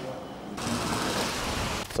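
Faint room tone, then about half a second in a sudden, steady hiss of rain and road noise heard from inside a moving car.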